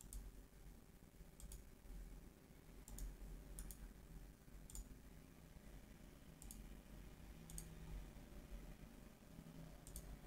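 Faint computer mouse clicks, about eight short sharp ticks at irregular intervals, over quiet room tone.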